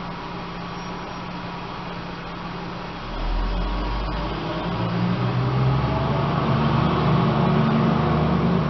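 A low engine rumble starts about three seconds in and grows steadily louder, over a constant background hum.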